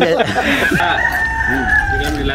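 A rooster crowing: one long drawn-out call that starts about half a second in and slowly falls in pitch as it is held.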